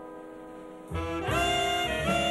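Jazz big band playing: a soft held chord, then about a second in the full saxophone, trumpet and trombone sections come in loudly together with a new chord.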